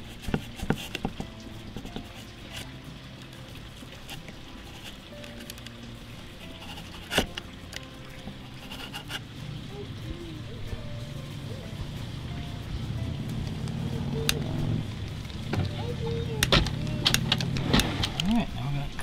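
Sharp clicks of side cutters snipping the end of a three-strand rope near the start, and a single click of a stick lighter about seven seconds in, over background music that grows louder toward the end.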